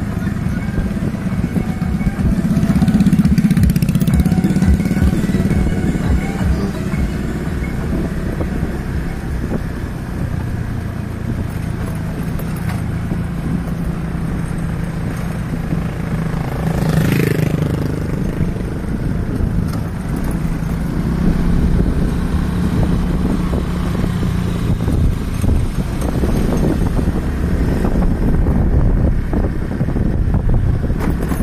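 A small motorcycle engine runs steadily at cruising speed, with road and wind noise around it. About 17 seconds in, another motorcycle passes close by, its sound rising and falling away.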